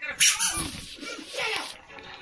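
A baby's high-pitched squeals and babble in two bursts, the louder one just after the start and a second about a second and a half in.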